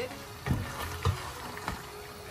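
Wooden spoon stirring chicken pieces and chopped potatoes in a pan as they sauté, with three short knocks of the spoon about half a second apart.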